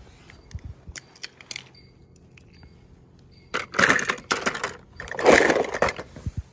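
Toy cars being handled over a plastic tub: a few light clicks, then two clattering, scraping bursts about a second long each, the louder one near the end.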